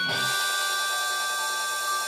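Music: the held final chord of an electric-guitar jingle ringing on steadily as several high tones with a bright wash over them, the drumbeat having stopped.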